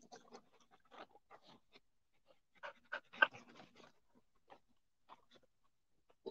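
Dogs panting, faint quick breaths in an uneven rhythm, with a louder cluster of breaths about three seconds in.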